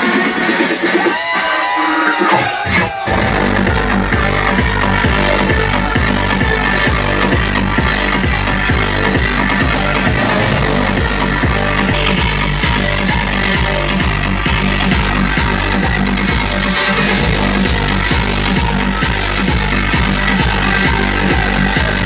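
Loud electronic dance music on a party sound system. A short break with gliding tones comes about a second in, then a heavy, steady bass beat drops in about three seconds in and carries on.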